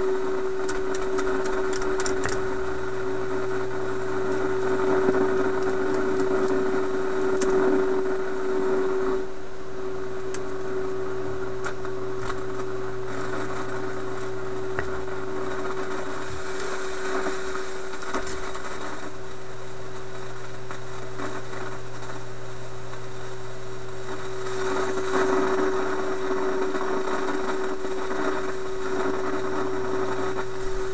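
Philips 922 vacuum tube radio's loudspeaker, turned way up, putting out a steady mid-pitched tone with a lower hum under it. A hiss of static swells twice, and a few sharp clicks come in the first couple of seconds.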